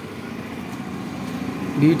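A steady low mechanical hum that grows slightly louder; a man's voice begins right at the end.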